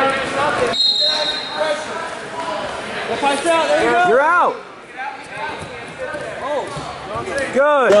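Wrestlers' shoes squeaking and scuffing on a wrestling mat in a large gym, with people talking around the mat. There is a few short rising-and-falling squeaks, one a little past the middle and one near the end.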